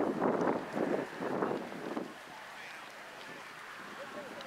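Indistinct voices of people talking for about the first two seconds, then fading to a quiet outdoor background.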